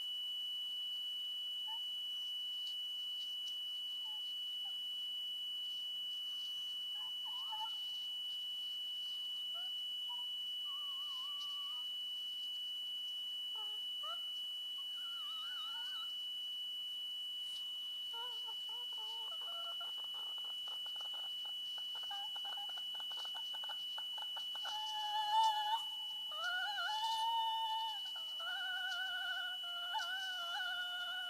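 Experimental vocal music: a woman singing into a microphone over a constant high tone. Her voice starts as faint, short wavering sounds and from a few seconds before the end becomes louder, held notes that slide up and down.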